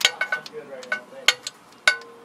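A run of light, sharp clinks and taps of small hard objects, several in two seconds, some ringing briefly.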